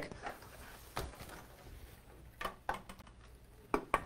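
Faint handling noises as a hose-end watering wand is picked up: a handful of soft, unevenly spaced knocks and clicks.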